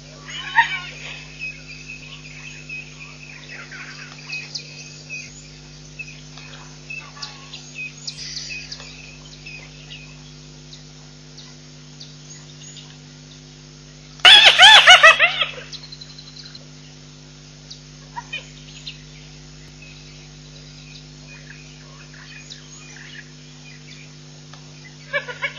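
Bush ambience of scattered bird chirps and insects over a steady low hum, broken about 14 seconds in by a loud burst of rapid repeated calls lasting under two seconds.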